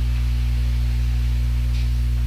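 Steady low electrical mains hum, several fixed low tones held at an even level throughout.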